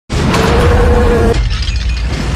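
Movie sound effects of crashing and shattering destruction over a deep rumble, with a steady held note that cuts off about a second and a half in.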